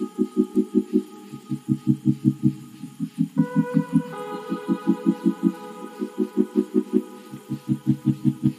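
Background music: rapid pulsing low notes in short runs of about half a dozen, under sustained higher tones, with a change of chord about three seconds in.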